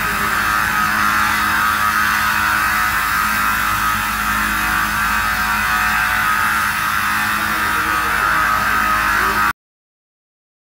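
ZMAX woodworking machine running under load as a board feeds through its rollers and cutters: a loud, even machine drone with a steady low hum. It cuts off abruptly near the end.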